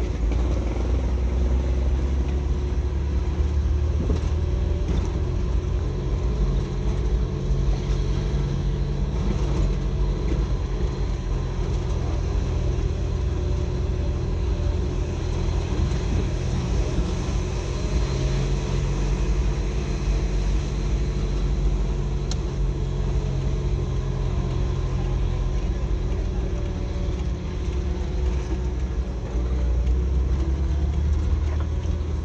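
Car engine running and road noise heard from inside the cabin while driving: a steady low rumble.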